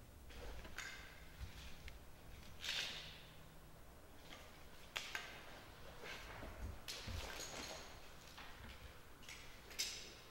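Bundled 1¾-inch fabric-jacketed fire hose and its nylon carry straps being handled as the load is unstrapped and pulled apart: scattered rustling and scraping swishes, with a few sharp clicks, one about five seconds in and one near the end.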